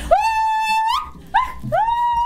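A woman's voice holding a long, high sung note that scoops up at the start, then a short yelp and a second long high note, a whooping end to a sung chastushka.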